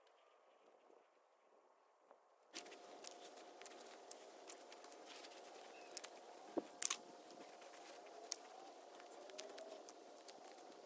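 Near silence at first; about two and a half seconds in, close rustling and crackling starts, with scattered sharp clicks, the loudest a few seconds later: the phone being handled and moved, and steps on dry bark mulch. A faint steady tone runs underneath the rustling.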